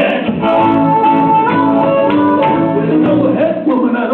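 Blues harmonica solo played into a microphone, held notes over guitar accompaniment.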